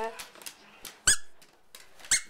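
A single short, sharp, high-pitched squeak about a second in, after a few faint taps.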